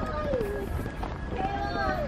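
A person's voice in long, sliding, drawn-out tones rather than words, over a steady low rumble.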